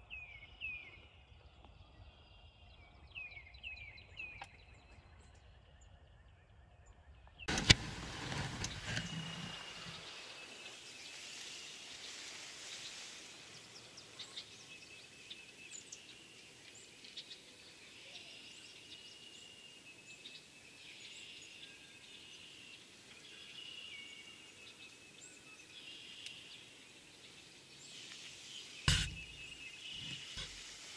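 Quiet outdoor ambience with small birds chirping and singing, broken by a loud thump about seven and a half seconds in and another just before the end.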